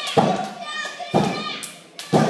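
Two heavy thuds on a wrestling ring's canvas mat about a second apart, with children's voices shouting between them.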